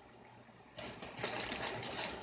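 Plastic zip-top bag being handled and sealed, a rapid crinkling, clicking rustle that starts about a second in.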